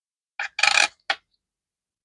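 Pennies clinking together as they are handled, three short chinks in about a second, the middle one the longest.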